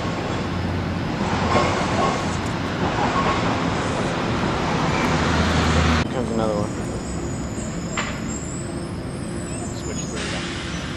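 Steady city traffic noise, fairly loud for about six seconds, then cutting off abruptly to a quieter background hum, with a single sharp click about two seconds later.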